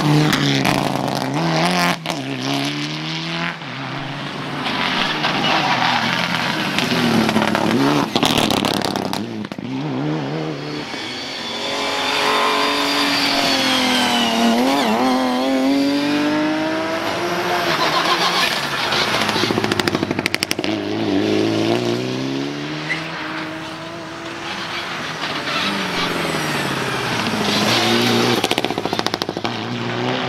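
Rally cars driven hard on a tarmac stage, engines repeatedly revving up through the gears and dropping back on the lift. The cars include a Mitsubishi Lancer Evolution and a BMW 3 Series coupe. About halfway through, one car passes close, its engine note rising and then falling away.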